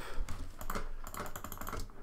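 Computer keyboard keys clattering as they are pressed in quick succession.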